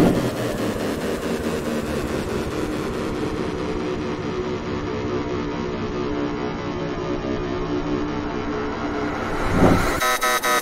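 A sound-effect sample from a drill producer pack: a steady drone built of many even, level tones, its highest frequencies muffled through the middle. A short rising sweep comes near the end.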